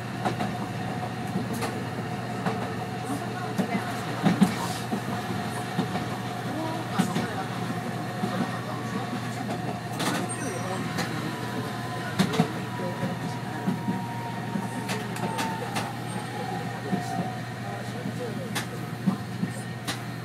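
Arakawa Line tram running on its track, heard from inside the driver's cab: a steady low hum with scattered clicks and knocks from the wheels and rail joints. A thin whine sets in about halfway and falls slightly in pitch near the end.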